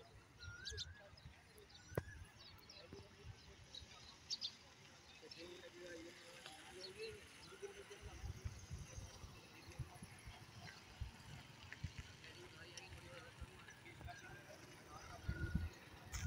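Quiet outdoor ambience: faint distant voices and a few scattered bird chirps, with occasional low rumbles. A louder low rumble rises near the end.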